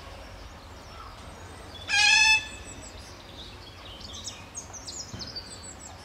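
Asian small-clawed otter calling: one loud, high-pitched squeal of about half a second, about two seconds in, followed by a run of short, high chirps.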